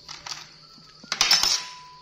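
A couple of light metal clinks, then a louder rattling clatter about a second in, from a metal spoon knocking and scraping against a cooking pot.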